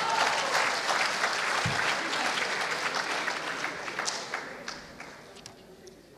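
A lecture audience applauding, with some laughter mixed in, after a punchline. The clapping is loud at first and dies away over the last second or two.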